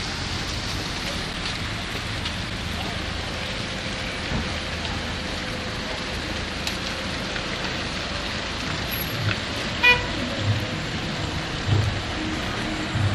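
Street traffic on a slush-covered road: car tyres running through wet snow and engines passing, a steady wash of noise. A short car horn toot sounds about ten seconds in.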